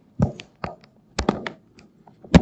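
A convertible Windows laptop being handled and folded into tablet mode: a quick run of sharp taps and knocks from its casing, about half a dozen in two seconds.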